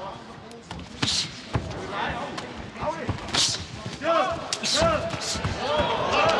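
Cage-side sound of a kickboxing bout: gloves and shins landing with dull thuds, short sharp hissing breaths from the fighters as they strike, and cornermen shouting, mostly in the second half.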